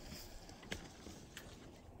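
Faint outdoor background hiss with two brief, faint clicks in the middle.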